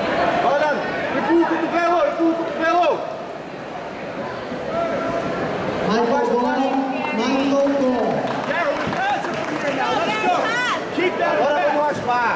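Several men's voices talking and calling out over one another, over the background murmur of a crowd in a hall.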